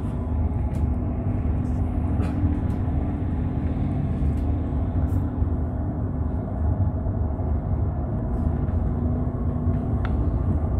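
Bus engine and road noise heard from inside the moving bus: a steady low rumble with a constant hum and a few light rattles.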